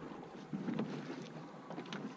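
Steady wind and boat noise at sea aboard a rigid inflatable rescue boat, with a few faint knocks and scuffs.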